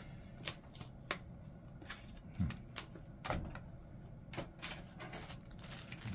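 Paper rustling and crackling as a folded instruction leaflet is handled, in a string of irregular crisp clicks.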